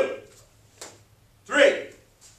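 Loud shouted count and kihap yells from a taekwondo drill: one shout ending right at the start and another about one and a half seconds in, with a soft knock between them.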